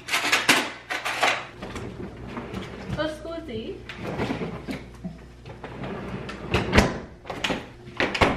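A ceramic bowl set down on a stone kitchen countertop with a few sharp knocks, then a refrigerator opened and rummaged in, and a door shut with a thud about seven seconds in.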